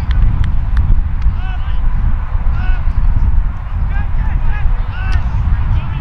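Wind rumbling on the camera microphone, with short, distant calls rising and falling over it every second or so.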